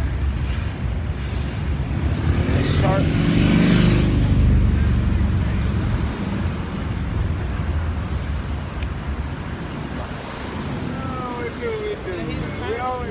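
City street traffic: vehicles running steadily, with one vehicle passing louder about two to four seconds in, then fading.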